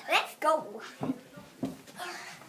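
A girl's high voice in a few short calls that trail off, followed by two soft thumps.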